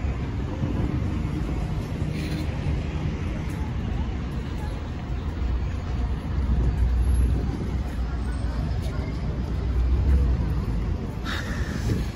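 City street ambience: road traffic passing, a steady low rumble that swells in the middle, with the voices of passers-by.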